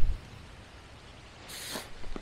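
A dull low thump right at the start, then a short rustle about one and a half seconds in, from a man working bent over in tall dry grass at an electric fence line.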